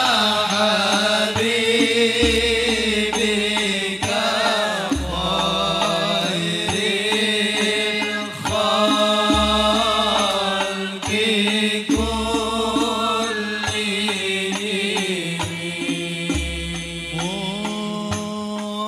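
Male voices singing an Islamic sholawat qasidah in unison through microphones, with long, wavering melismatic lines. Banjari-style frame drums accompany it, with light hand strikes and a deep bass beat every two to three seconds.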